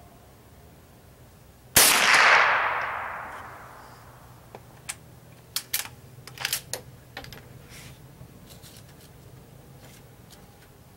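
A single shot from a Henry lever-action .22 LR rifle about two seconds in, a sharp crack trailing off over about two seconds. A few seconds later comes a quick run of metallic clicks, the lever being worked to chamber the next round.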